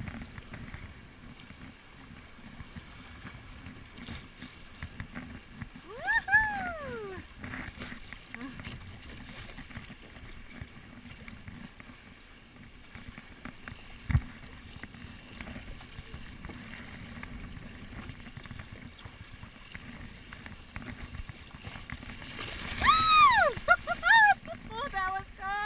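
River rapids splashing and rushing around a kayak hull as it is paddled, a steady low water noise. A high voice whoops with a rise and fall in pitch about six seconds in and again, louder, near the end, and a single knock comes about halfway through.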